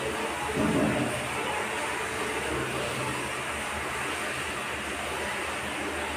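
Steady rushing background noise with a faint low hum underneath, and a short voice-like sound just under a second in.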